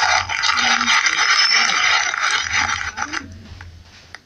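Audience applause in a hall, dying away about three seconds in.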